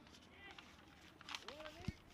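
Faint, indistinct voices over a low background hiss.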